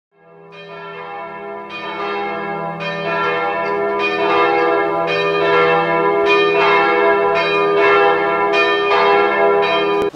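Bell tolls struck about once a second over a steady low drone, swelling louder as it goes and cutting off suddenly at the end.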